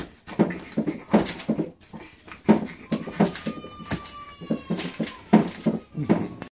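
A baby cooing and babbling in short repeated sounds, two or three a second, with a thin high note held for about a second and a half around the middle.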